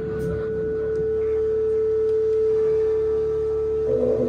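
A single steady electronic tone from the stage, one held note with no beat under it; a fuller, wider sound joins in right at the end.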